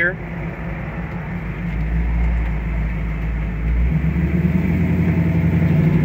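The 6.0-litre fuel-injected LS-family V8 of a 1967 Camaro runs steadily at low revs through a right turn. About four seconds in it gets louder and rises slightly in pitch as the car picks up speed.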